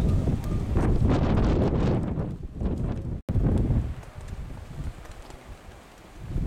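Wind buffeting the camera's microphone in low, uneven gusts, heavy for the first three seconds. After a sudden break a little past three seconds it goes on more lightly.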